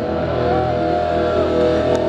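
Live band's amplified electric guitars holding a sustained, ringing chord as a loud drone, one note bending slightly partway through.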